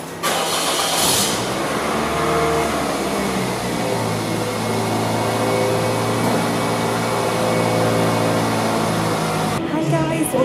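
Car engine starting, with a noisy burst lasting about a second as it catches, then running steadily at idle.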